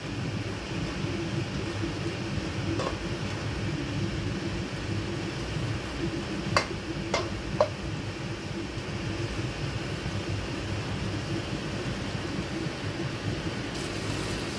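Prawns in a thick, reducing sauce simmering in a nonstick wok, with a steady fan-like hum under it, as the sauce cooks down to a sticky glaze. A spatula stirs and knocks against the pan a few times, sharpest around the middle.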